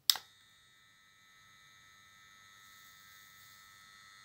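Weller Expert 100 W soldering gun switched on with a click, then its transformer humming steadily with a thin high whine: current is flowing through the homemade copper-wire tip, so the repair works.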